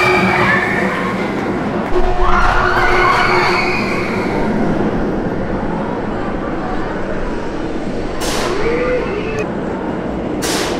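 Premier Rides linear-induction launched steel roller coaster train launching out of the station and running its track: a steady rolling rumble. Riders scream near the start and again about two seconds in, where the rumble swells. Two brief whooshes come near the end as the train passes.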